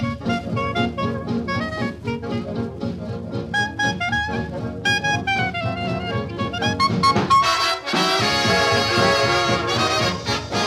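Swing big-band instrumental played from a 1939 78 rpm record, brass and rhythm section in a busy passage of short phrases. About eight seconds in, the full band comes in on loud, held chords.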